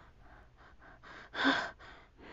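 A person's quick, short breaths, with one louder gasp about a second and a half in, voicing a frightened cartoon rabbit.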